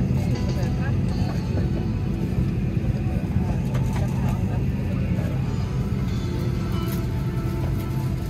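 Steady low hum of an airliner cabin parked at the gate, with faint music and indistinct voices over it.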